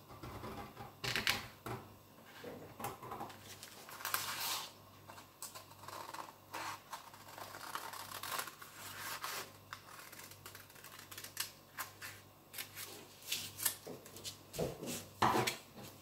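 Scissors cutting through a paper pattern piece: an irregular series of short snips.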